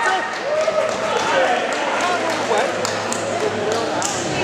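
Background voices of spectators and competitors chattering in a large sports hall, with several sharp knocks in the second half.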